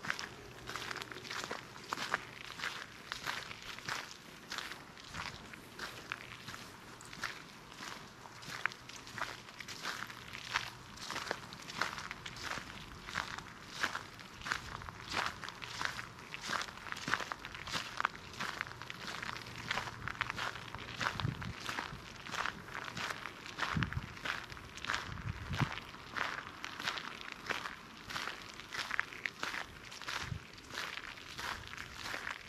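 Footsteps walking at an even pace on a fine gravel path scattered with dry fallen leaves, each step a short crunch, about two a second.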